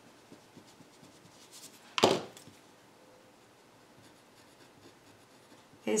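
Pen writing on paper, faint scratchy strokes, with one brief louder noise about two seconds in.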